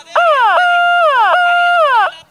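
A man's loud, high-pitched, drawn-out call over the public-address system, three times in a row. Each note holds a steady pitch and then drops away.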